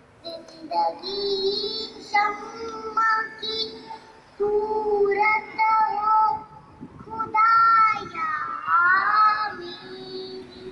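A young girl singing solo into a microphone, in held notes with short breaks between phrases and a few notes that slide in pitch near the end.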